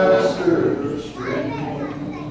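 Men's voices singing a gospel song into a microphone: a held note ends early on, and the next sung phrase begins with another long note near the end.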